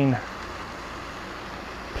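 Steady outdoor background noise, an even hiss with a low rumble and no distinct events, between two spoken remarks.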